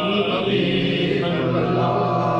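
A man singing a naat (devotional kalam) into a microphone in long held notes, moving to a new note about half a second in.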